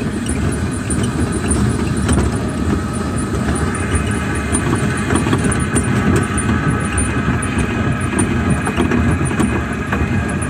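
Small ride train running along its track: a steady rumble, joined about four seconds in by a faint high squeal.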